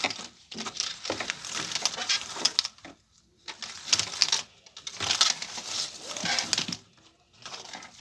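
Rustling and crackling handling noise from a phone being moved in the hand, in three spells of dense clicks separated by short silences.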